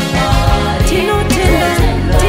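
A Shona gospel song: a woman singing lead over backing vocalists and a band with bass and drums.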